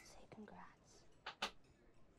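Near silence, with faint whispered speech and two brief clicks about a second and a half in.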